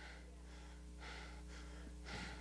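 A man breathing hard into a handheld microphone between phrases: a short breath at the start and a longer one from about a second in, over a steady low hum.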